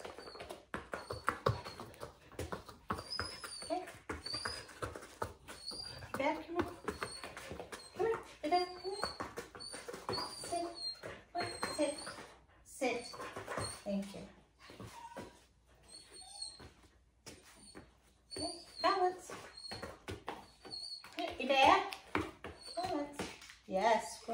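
A dog whining in short, high-pitched whimpers, repeated many times, over background speech.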